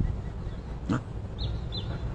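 Two short, high chirps of a small bird near the end, over a steady low background rumble, with a single soft click about a second in.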